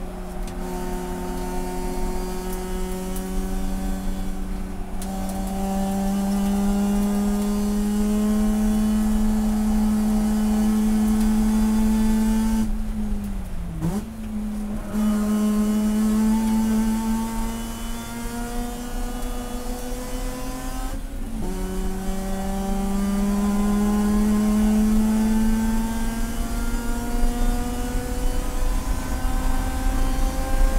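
Racing car's rotary engine heard from inside the cockpit under hard throttle, its pitch climbing steadily with road speed. Brief breaks for gear changes come about five seconds in and about two-thirds of the way through, and around the middle the note dips and recovers as the car brakes and downshifts for a corner.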